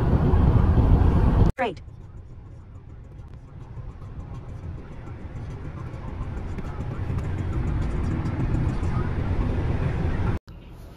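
A car driving at highway speed: loud wind and road rush filmed at the side window, then, after a cut about a second and a half in, the much quieter low rumble of road noise heard inside the cabin, slowly growing louder.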